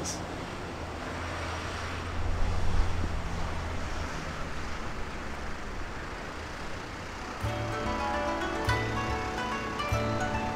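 Cars driving over a railway level crossing: a low rumble of engines and tyres that swells about two to three seconds in, then fades. From about seven and a half seconds, background music comes in.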